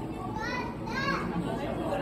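Children's high-pitched voices and chatter from a crowd of onlookers, with two short squeals about half a second and a second in, over a steady low hum.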